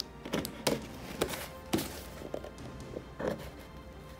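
A cardboard figure box being handled on a table: a handful of knocks and taps as it is gripped, turned and set down, over quiet background music.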